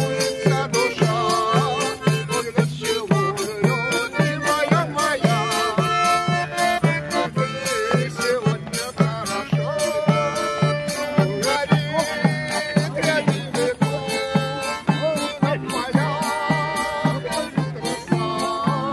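Button accordion playing a lively folk dance tune with a steady bass beat about twice a second, with a tambourine jingling along on the beat.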